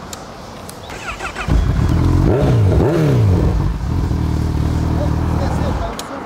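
Honda CB1000R's inline-four engine comes in abruptly about a second and a half in. It is revved a couple of times with rising and falling pitch, then runs steadily until it stops just before the end.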